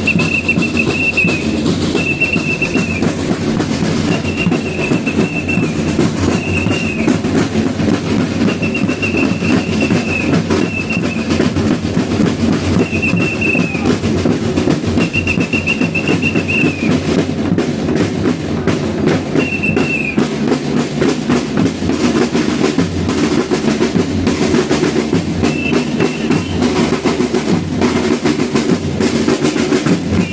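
A marching street crowd with dense, rapid drumming. Short high tones repeat about once a second for the first twenty seconds, then come only now and then.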